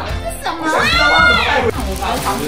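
Excited voices of a small group, with one drawn-out exclamation that rises and falls in pitch near the middle, over background music.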